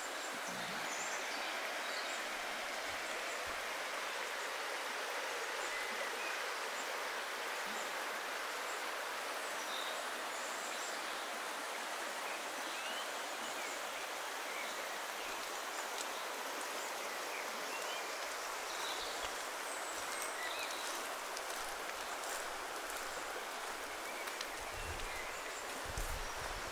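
Shallow river flowing over a stony bed, a steady, even rush of water. Faint, scattered bird chirps sound above it.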